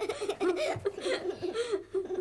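Children laughing.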